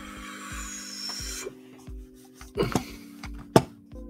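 Soft background music with steady held tones and a regular low beat, over close handling noises: a rubbing rustle for the first second and a half, a short clatter past halfway, and one sharp click near the end, the loudest sound.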